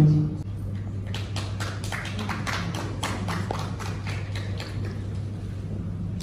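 A few people clapping: scattered, irregular hand claps for about three seconds that thin out, over a steady low hum.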